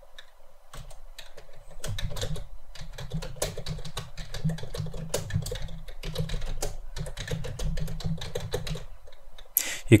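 Typing on a computer keyboard: a quick, uneven run of key clicks lasting about eight seconds, stopping shortly before the end.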